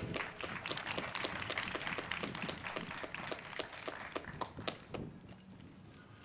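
Scattered applause from a small crowd, dense at first and thinning out until it stops about five seconds in.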